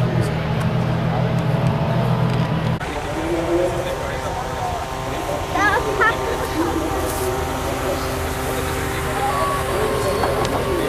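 Indistinct voices over steady car engine noise. The background changes abruptly about three seconds in, a steady low hum giving way to a thinner mix of voices and engine tones.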